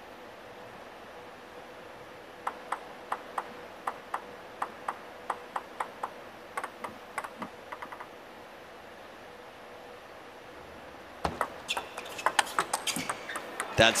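Celluloid-type table tennis ball bounced repeatedly on the table before a serve: sharp clicks about three a second, ending in a run of quicker, fading bounces. Near the end comes a rally, the ball clicking off the table and the rackets in quick, uneven strikes.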